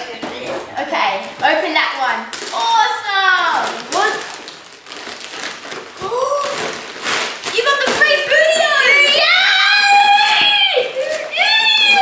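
Children's excited high-pitched voices and exclamations, mostly in the second half, over wrapping paper rustling and tearing as a present is unwrapped.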